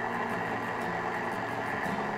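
KitchenAid stand mixer motor running steadily, turning the spaghetti cutter attachment with no dough in it yet, with a faint steady high whine.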